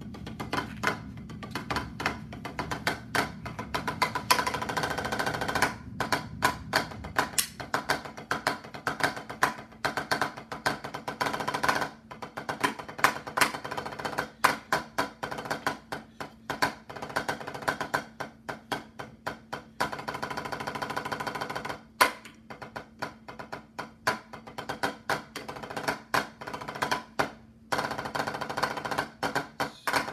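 Drumsticks on a drum practice pad: fast strokes and rolls in a dry, woody tick, stopping briefly and starting again several times.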